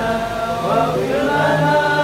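Voices chanting an Arabic devotional prayer in a slow melody, holding drawn-out notes that glide between pitches.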